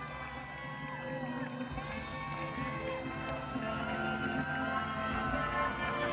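Music with long, sustained held notes at a steady, moderate level.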